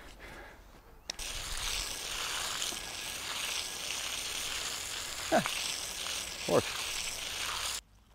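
Garden hose nozzle spraying a jet of water: a steady hiss that starts suddenly about a second in and cuts off just before the end.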